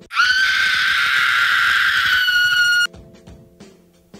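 A high-pitched scream sound effect: it slides up at the start, holds steady for nearly three seconds, then cuts off abruptly. Soft background music follows.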